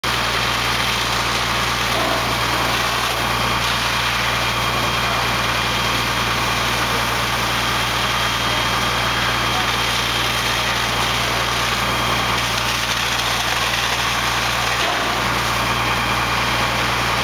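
Fire apparatus diesel engines running steadily at the fireground, a constant low drone with a few steady tones above it while the pumps supply the hose lines and ladder stream.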